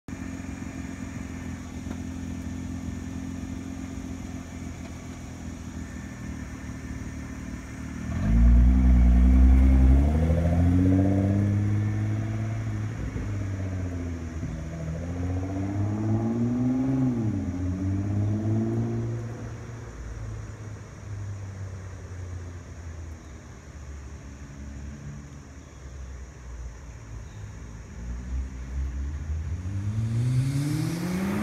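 2013 Nissan GT-R's twin-turbo 3.8-litre V6, fitted with AAM Competition intakes and a non-resonated, cat-less midpipe, idling steadily. About eight seconds in it accelerates hard away, loudest at the launch, and climbs in pitch through a few gear changes before fading as the car drives off. Near the end it grows louder and rises in pitch again as the car comes back.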